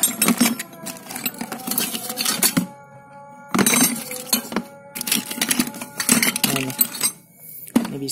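Metal wrenches and tools clinking and clattering as a hand rummages through a bucket of tools, in three spells of clatter with short pauses between. Faint steady music runs underneath.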